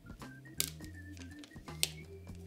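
Two sharp clicks about a second and a quarter apart as fingers handle a plastic gaming headset's ear cup, over quiet background music with steady low bass notes.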